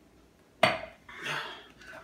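A drinking glass set down hard in a kitchen, giving one sharp clink about half a second in, followed by a softer, briefer clatter.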